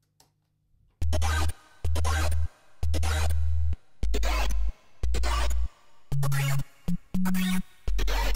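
Xfer Serum software synth playing a patch whose wavetable was generated from the typed word "cat". After about a second it plays eight short notes with a heavy sub-bass, a distorted, speech-like synth tone. The first three share a pitch, the next two drop lower and the last notes rise higher.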